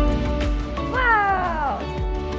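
Background music, with one pitched call about a second in that slides down in pitch for under a second, like a cat's meow.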